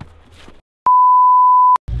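A single steady electronic beep of one pure pitch, just under a second long, starting and stopping abruptly, with a moment of dead silence just before it.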